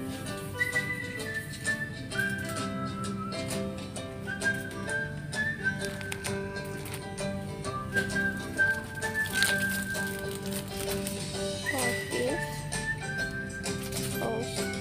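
Background music: a high melody of long held notes over sustained lower notes, with scattered light clicks.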